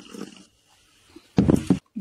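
A woman's single short, loud, throaty vocal sound, not a word, about one and a half seconds in, after faint noise at the start.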